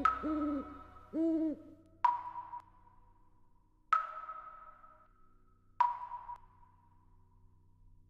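An owl hooting twice, each hoot rising, holding and falling in pitch, as a sound effect. Then three soft chime notes about two seconds apart, each struck and ringing out.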